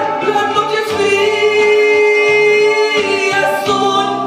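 A man singing a Spanish-language ballad into a handheld microphone over a karaoke backing track, holding one long steady note for about two seconds in the middle.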